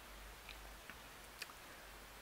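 Near silence with three faint, short clicks of a plastic action figure being handled by fingers.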